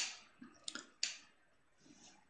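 A few faint, short clicks, the two clearest about two thirds of a second and a second in, with near silence between them.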